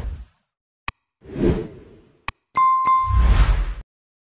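News-channel outro sting made of sound effects: whooshes with a deep low rumble, broken by short sharp clicks, and a bright ringing ding about two and a half seconds in. It all cuts off just before the end.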